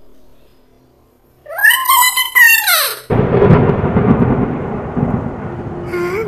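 A loud, high shriek that rises and falls over about a second and a half, then a sudden crash of thunder about three seconds in that rumbles on: horror sound effects.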